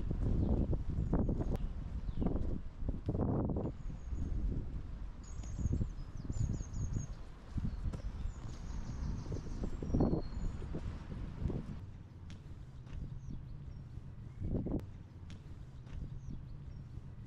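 Wind rumbling on the microphone with footsteps on a paved bridge deck, the rumble easing in the last few seconds. Small birds chirp in short repeated phrases in the background from a few seconds in.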